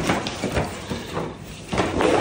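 Irregular knocks and scuffs of footsteps in flip-flops on a tile floor, with gear bags being handled.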